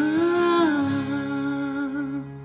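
A man's voice holds one long wordless note at the end of an acoustic song. The note lifts slightly in pitch partway through and settles back, with a low steady note ringing underneath.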